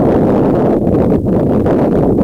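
Wind buffeting the microphone: a loud, steady low rumble with two brief lulls about a second in.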